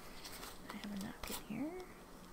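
A woman's quiet murmured vocal sounds without clear words: a low held hum, then a short rising one, with a few light clicks in between.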